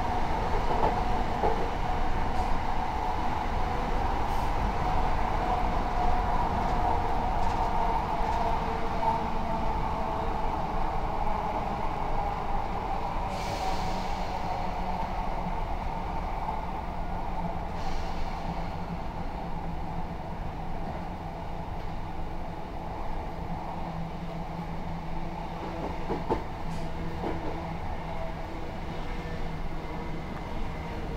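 Electric multiple-unit train heard from inside the carriage, running with a steady rumble of wheels on rail. Its motor whine slowly falls in pitch and fades over the first half as the train slows, leaving a low steady hum, with a couple of brief hissing bursts in the middle.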